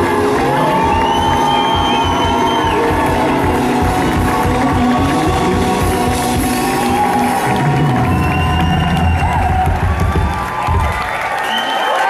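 A live band plays the end of a neo-soul song while the crowd cheers and whoops. The low sustained notes stop shortly before the end.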